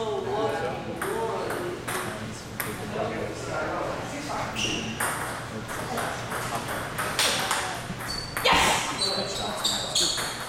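Table tennis rally: the celluloid ball clicking sharply back and forth off the paddles and the table in a quick, irregular run of hits.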